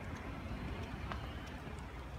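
Steady low rumble of city street traffic, with a few faint light clicks.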